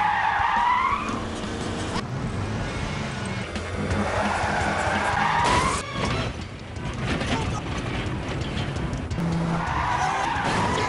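Car tyres squealing in long, pitch-sliding screeches as cars skid through turns, over engine noise. There is a squeal right at the start, another that builds up to a sharp knock about six seconds in, and a third near the end. Film-score music runs underneath.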